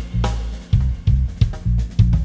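Live band playing an instrumental piece: a drum kit keeps a steady beat of sharp hits over low bass notes, with keyboard playing.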